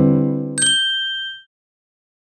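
Logo sting: a low held chord, then about half a second in a bright bell-like ding that rings and dies away by about a second and a half.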